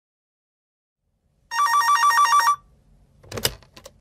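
Electronic telephone ringing once: a fast warble between two tones, lasting about a second. It is followed a moment later by a sharp click.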